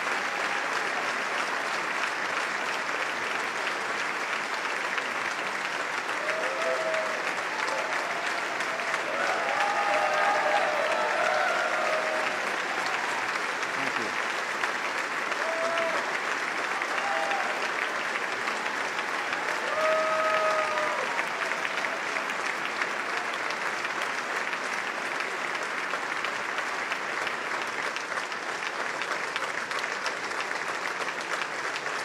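A large standing audience applauding without pause, with scattered voices calling out above the clapping between about six and twenty-one seconds in.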